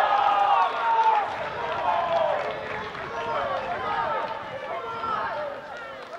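Several voices shouting and cheering together in celebration of a goal: loud at first, then slowly dying down.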